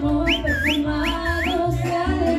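Mariachi music playing, with someone whistling over it: two pairs of quick upward-sliding whistles in the first second and a half.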